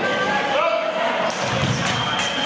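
Fencers' quick footwork and a lunge, feet thumping and slapping on the piste in a cluster of hits about two-thirds of the way in, over voices in the hall.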